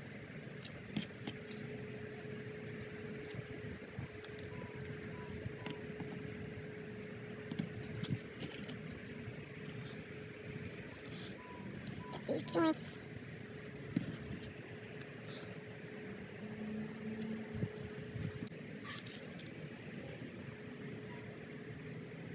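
Faint, quiet handling of PVC fittings and a primer-can dauber, with scattered light clicks and taps over a steady low hum. Just past the middle there is one short, wavering pitched sound.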